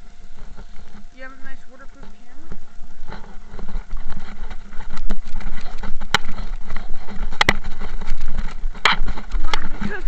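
Rustling, rumbling handling noise from a hand-held camera carried on a walk, with sharp knocks at several points. It is preceded by a brief wavering voice-like sound about a second in. The noise grows louder after about three seconds.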